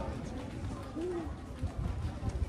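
Street ambience: indistinct voices of passers-by talking, over irregular low thuds of footsteps.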